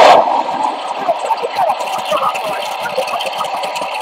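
Wind and water noise on a boat at sea, with faint voices over it, played back through computer speakers and re-recorded. A loud rush of noise cuts off just after the start, and a steadier, quieter rushing follows.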